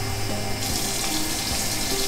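Tap water running steadily into a bathroom sink; the stream gets louder and brighter about half a second in.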